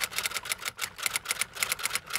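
Typewriter-key sound effect: a rapid run of sharp clicks, about ten a second, as text is typed out.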